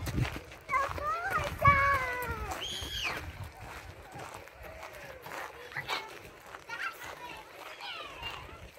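A young child's high voice calling out in the first three seconds, ending in one high squeal, then the fainter chatter and shouts of children playing.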